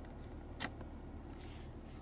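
A light click as a USB adapter plug is pushed into a car's 12-volt accessory socket, over a faint steady low hum.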